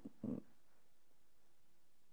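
A brief hesitation sound from a woman's voice just after the start, then near silence: room tone.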